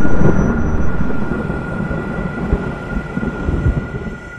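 Intro sound effect: a deep rumble fading away over a few seconds, with a steady high ringing tone held under it.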